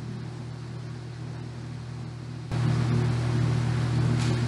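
Steady low electrical hum under an even hiss, with no other event. About two and a half seconds in it suddenly steps up louder and stays there.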